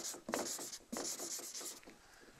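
Chalk writing on a blackboard in several short strokes with brief pauses between, stopping just before the end.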